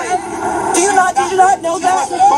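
Speech: people's voices talking over one another, with crowd babble behind.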